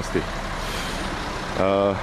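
Steady road traffic noise with a vehicle engine running close by, and a short voiced sound near the end.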